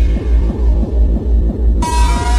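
Hardcore techno: a heavy distorted kick drum pounding at about three beats a second, each kick falling in pitch. Near the end a bright, noisy synth layer with a held high tone comes in over it.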